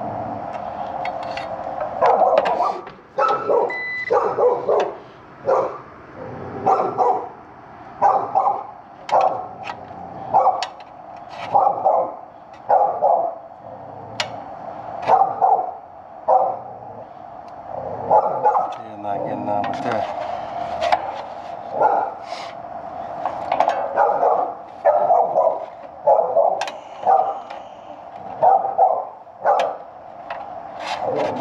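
A dog barking over and over, about one or two barks a second, starting about two seconds in and keeping on with short pauses.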